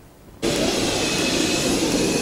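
Small jet aircraft's engines running, a steady loud rushing hiss with a faint high whine, starting abruptly about half a second in.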